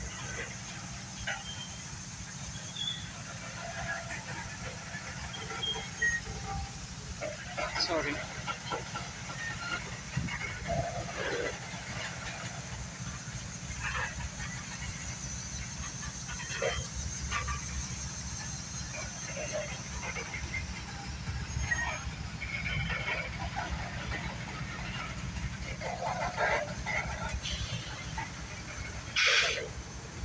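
Freight train of covered hopper cars rolling slowly past: a steady low rumble of wheels on rail, with scattered short squeaks and clanks and one louder burst near the end.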